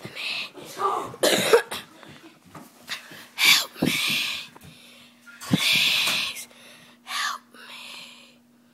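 A person making harsh coughing and gasping sounds in about six short bursts, the loudest about a third of the way in and again near three-quarters.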